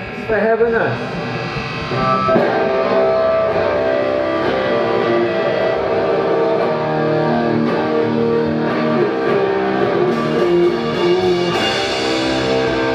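Distorted electric guitars start playing sustained chords about two seconds in, opening a song in a live rock set, after a brief voice at the mic. Near the end the sound swells with a crash from the drum kit.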